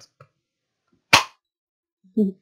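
A handheld Stampin' Up! Cactus Builder craft punch snapping shut once, about a second in, as it cuts the pot shape out of watercolour paper: a single sharp click.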